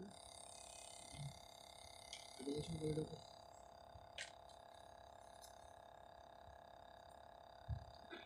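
Quiet outdoor ambience with a faint steady hum. A brief, distant voice comes about two and a half seconds in, and there is a soft click and a low thump later on.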